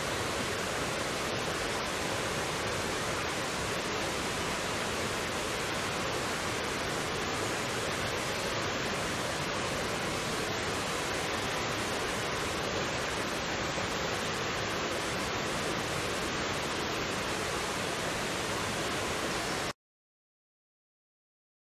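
Steady rushing of a small waterfall and stream cascading over rocks, a constant even wash of water noise that cuts off suddenly near the end.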